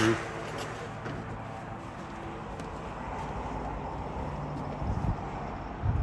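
Steady outdoor background noise, an even hum like distant traffic, with a few low rumbling bursts near the end.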